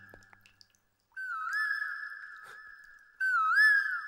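A high, clear whistle-like tone, sounded in phrases that each dip and rise quickly in pitch and then hold one steady note. The tail of one phrase fades out at the start and a short near-silence follows. The phrase then comes twice more, about a second in and again near the end, the second one louder.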